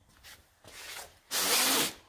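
Light rustling, then one loud scraping rub lasting about half a second, about two thirds of the way in.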